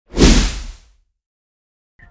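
A whoosh sound effect with a deep low boom beneath it, the logo sting of a news programme's intro; it swells quickly and fades out within about a second, followed by silence.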